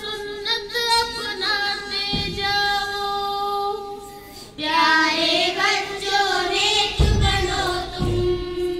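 A group of girls singing together, holding long notes; the singing drops away briefly around the middle and comes back louder. Two short low thumps, about two seconds in and about a second before the end.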